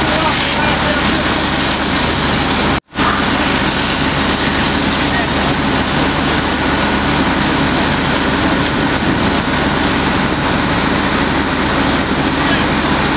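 Steady loud din of a working fire scene: engines running under a constant rushing noise, with indistinct voices. It cuts out suddenly for a split second about three seconds in.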